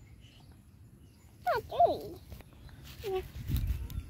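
Dog whining yelps during rough play-fighting: a couple of short, high cries that drop sharply in pitch about one and a half seconds in, and another brief one near three seconds.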